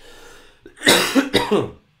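A man coughs to clear his throat: one loud cough about a second in, with a second, shorter push right after it.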